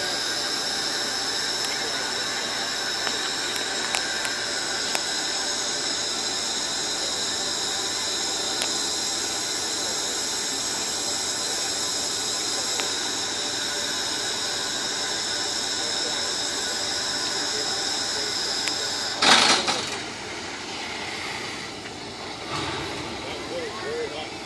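Steady high-pitched steam hiss from a 4-4-0 replica steam locomotive. About nineteen seconds in, a loud sudden rush lasting about half a second cuts the hiss off, and a quieter murmur follows.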